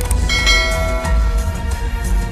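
Background music with a heavy bass beat. About a third of a second in, a bright bell-like chime rings out over it and fades: the notification-bell sound effect of a subscribe-button animation.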